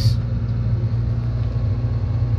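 Forestry forwarder's diesel engine running at a steady speed, heard from inside the cab: a loud, even low drone that holds one pitch.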